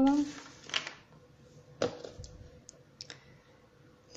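Small plastic jars and a glass bottle being handled on a table: one sharp click a little under two seconds in, then a few faint ticks.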